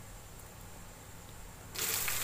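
Faint room tone with a low hum, then near the end a steady hiss of rain on wet concrete paving starts suddenly and much louder.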